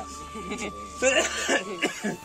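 A man coughs about a second in, over low voices, with a faint steady tone held underneath until near the end.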